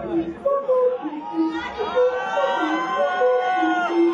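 Several voices chattering, with a longer raised, drawn-out voice in the second half.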